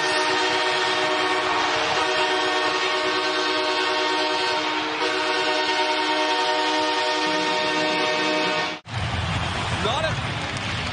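Arena goal horn blaring a steady, many-toned chord for a home goal, held for nearly nine seconds before it cuts off suddenly.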